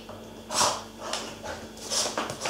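Seven-week-old Labrador Retriever puppy grabbing at a toy: three short, noisy sounds, the loudest about half a second in.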